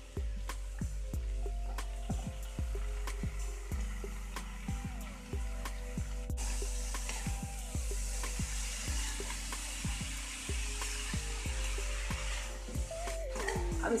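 Soft background music with held notes, over a metal spatula scraping and knocking against a kadhai as potatoes and coriander are stirred. A hiss of frying comes in about six seconds in.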